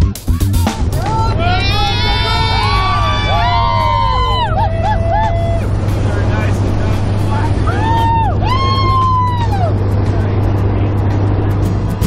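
A group of skydivers in a jump plane's cabin whooping and cheering in long rising-and-falling calls. The first round runs from about a second in to about five seconds, and a shorter one comes near eight seconds. Under it all is the steady drone of the aircraft engine.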